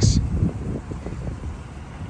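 Low, uneven wind rumble on the microphone, fading away, after the tail of a spoken word at the very start.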